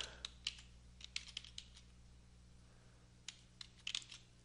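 Faint keystrokes on a computer keyboard, typed in two short runs with a pause of about two seconds between them, over a low steady hum.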